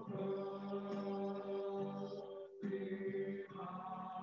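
A small group of men singing long, held notes into microphones, with electronic keyboard accompaniment. The sound breaks off briefly about two and a half seconds in and then goes on with a new held chord.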